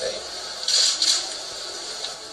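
Indistinct speech in a press room, with a brief loud hiss about two-thirds of a second in.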